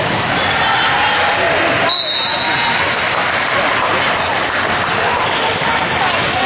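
Basketball game sounds in a gym: voices and chatter echoing in the hall, with a ball bouncing on the hardwood court. A short, high whistle tone comes about two seconds in.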